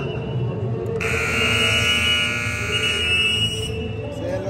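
Arena scoreboard buzzer sounding about a second in and held steadily for nearly three seconds before cutting off, signalling that the game clock has run out. Low hall noise from players and spectators lies underneath.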